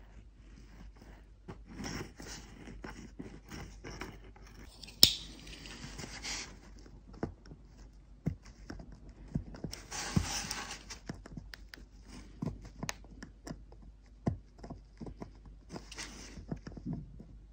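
Small handling noises: light clicks, taps and scrapes of fingers and metal forceps on a tiny plastic N gauge tram bogie, with a sharper click about five seconds in and brief rustles around five and ten seconds.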